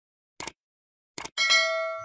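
Subscribe-button animation sound effect: two short mouse-style clicks, then a bell ding that rings on and fades.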